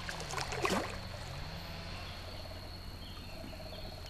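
A hooked fish splashing and thrashing at the water's surface: one short burst of splashing under a second in, fading within about half a second.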